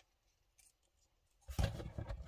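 Faint clicks of a plastic action figure's joints and parts being moved by hand. About one and a half seconds in comes a louder, deep thump with rubbing that lasts about a second, as the figure and a hand come down onto the mat.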